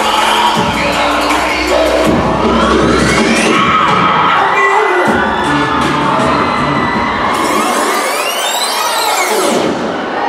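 Loud dance music for a routine, with a crowd of young people cheering and shouting over it. The bass beat drops out about three and a half seconds in, and near the end a sweeping effect rises and falls in pitch.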